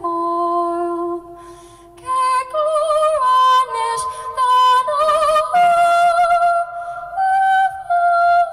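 A woman singing solo and unaccompanied in Irish: a slow Christmas carol in traditional Irish style. A low held note opens, followed by a short breath pause, and then the melody moves on with vibrato on the long notes.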